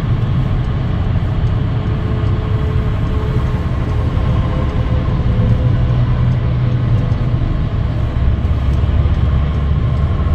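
Steady road noise inside a car driving at highway speed: a continuous low rumble of tyres and engine.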